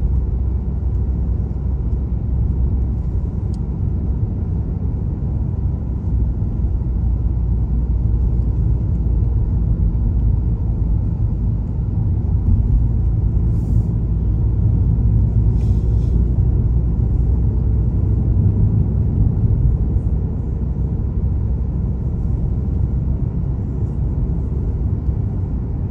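Steady low rumble of a car driving on a paved road, heard from inside the cabin. Tyre and engine noise, a little louder in the middle stretch.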